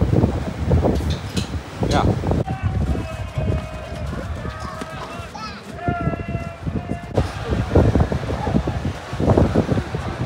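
Voices of people nearby talking and calling out, with wind rumbling on the microphone. For a few seconds in the middle, clearer pitched voice sounds stand out over a quieter background.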